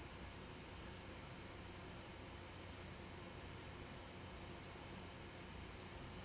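Faint steady hiss with a low hum: the room tone of the narration microphone, with no other sound.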